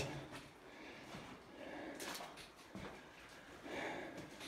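Faint footsteps and scuffs on a rocky mine floor, with a couple of brief knocks about halfway through.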